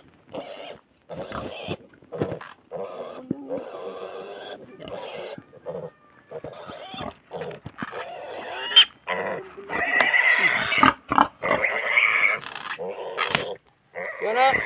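Pig grunting over and over in short bursts, louder in the second half.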